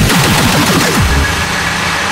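Hardcore electronic music: a fast roll of heavily distorted kick drums, each sweeping down in pitch, that stops a little over a second in and leaves a quieter held synth tone.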